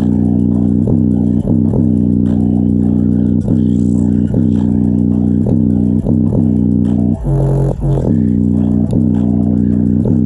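JBL Charge 4 portable Bluetooth speaker, grille removed, playing bass-heavy music loudly, a deep bass line whose notes keep sliding down in pitch, with its passive radiators pumping.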